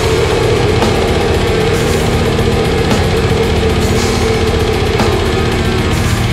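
Black metal song with the full band playing: fast, even drumming under a dense wall of distorted guitars.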